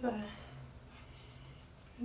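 A spoken word trails off, then faint scratchy handling sounds as a plastic makeup tube and a damp beauty sponge are held and turned in the hands.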